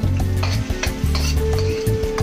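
Minced garlic sizzling in hot oil in a stainless steel wok, over background music with a steady low bass.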